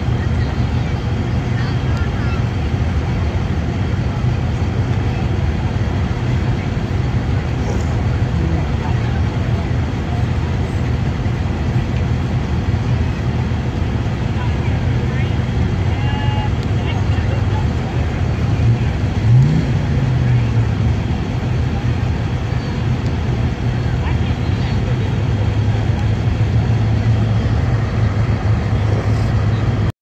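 Engines of slow-moving parade vehicles running in a steady low rumble, with spectators' voices and one short rise in pitch a little past the middle.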